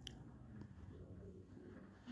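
Near silence: room tone in a meeting room with a faint steady low hum and a brief click right at the start.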